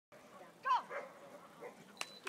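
A dog barks once, under a second in: a short bark that drops in pitch.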